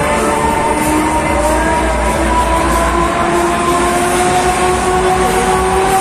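Break Dance fairground ride running: a steady rumbling mechanical sound with two held tones slowly sliding in pitch, one rising and one falling, with the ride's music underneath.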